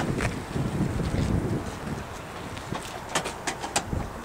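Wind buffeting the camera microphone as an uneven low rumble, with a few short clicks in the last second and a half.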